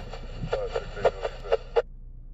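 Railroad scanner radio playing a transmission through its speaker, a faint clipped voice that cuts off abruptly near the end.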